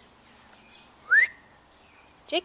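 A person's single short whistle, about a second in, sliding quickly upward in pitch.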